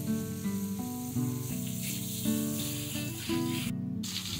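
Background music, a simple melody of held notes, over the steady sizzle of tilapia (jilebi fish) pieces deep-frying in hot oil. The sound drops out briefly near the end.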